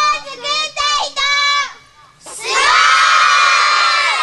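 A group of children shouting together: a short called-out phrase, then from about two seconds in one long, loud cheer held to the end.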